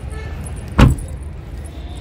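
The fairly light boot lid of a Hyundai Verna sedan pushed down by hand, shutting with a single thud a little under a second in.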